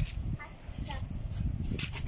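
Footsteps on an asphalt lane, a sharp step about once a second, over a low wind rumble on the microphone. Two short falling calls sound about half a second and a second in.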